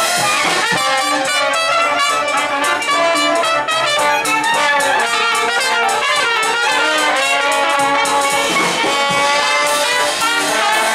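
Live traditional jazz band playing, with brass horns, among them a pocket trumpet, carrying the melody over a drum kit keeping time on the cymbals.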